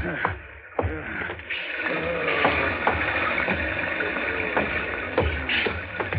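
A steady hiss of a water sound effect, with scattered light knocks through it, setting in about a second and a half in.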